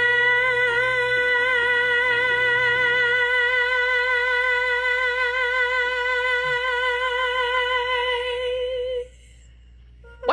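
A female singer's voice holds one long sustained high note with a slight vibrato for about nine seconds, ending about a second before the end.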